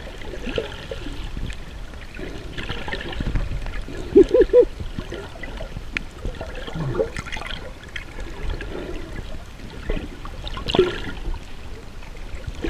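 Muffled underwater sound of water moving past the camera as a swimmer kicks with fins, with short gurgling bubble blips; three quick louder blips come about four seconds in and another cluster shortly before the end.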